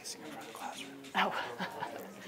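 Overlapping talk of several people in a room, with a loud voiced "oh" just over a second in.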